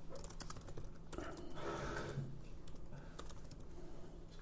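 Typing on a computer keyboard: a run of irregular, quiet key clicks as a line of code is entered.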